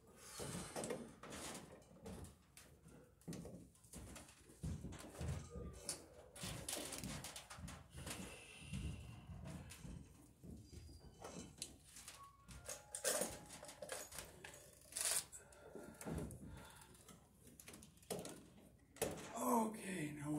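Scattered clicks, taps and rustles of electrical wires being handled and twisted together by hand at a metal junction box.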